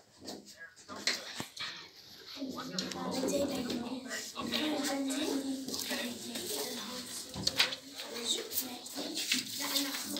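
Indistinct chatter of children's voices in a small room, starting about two and a half seconds in, with scattered small clicks and knocks of handling.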